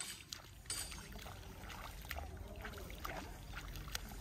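Faint sloshing and small splashes of muddy paddy water as rice seedlings are pushed by hand into a flooded field, a few scattered soft clicks over a low steady rumble.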